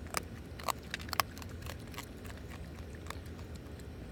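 Baby raccoon crunching dry kibble, with irregular sharp clicks of chewing that come thickest in the first second or so and sparser after.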